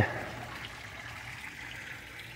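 Water trickling steadily in a garden rock water feature.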